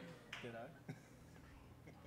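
Nearly quiet stage with a short faint voice about half a second in and a single sharp click about a second in.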